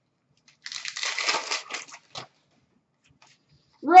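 Upper Deck SP Authentic hockey card pack and cards handled by hand: a crinkly rustle of wrapper and card stock, starting about half a second in and lasting about a second and a half.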